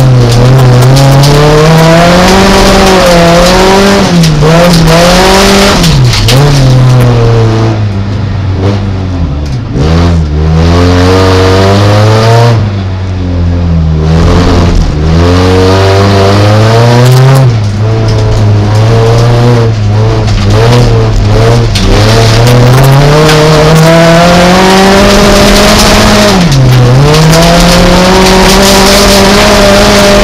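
Folkrace car engine heard from inside the cabin at racing speed, its revs climbing and falling over and over, with several sharp dips and a spell of lower revs in the middle.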